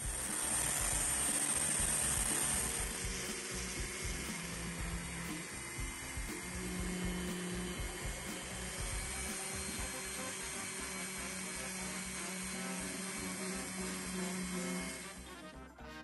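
Small rotary tool spinning a felt polishing wheel against a cast silver coin, a steady whirring buff, slightly louder in the first couple of seconds, under background music.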